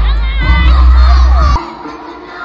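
Loud live concert music with heavy bass, high voices shouting and singing over it, heard through a phone's microphone. About a second and a half in it cuts off abruptly, leaving a quieter crowd of children's voices.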